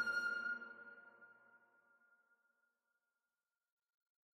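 The song's last chord ringing out and dying away within about a second and a half, one high held note lasting longest before it fades to silence.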